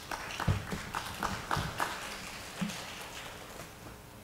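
Footsteps on a hard floor: a quick run of about seven steps in the first two seconds, then one more a little later.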